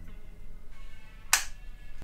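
A single sharp click about a second and a third in, as the air rifle's plastic folding stock is swung open and latches into place, over quiet background music.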